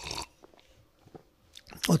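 A short breath and a few faint mouth clicks from a lecturer pausing between phrases, then his speech resumes near the end.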